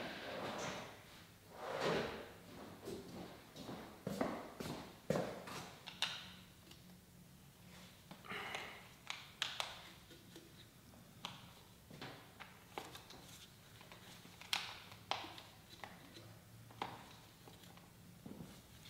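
Irregular light clicks, taps and brief rustles of hand tools and loosened parts being handled at a Yamaha Zuma scooter's handlebars, with no steady rhythm.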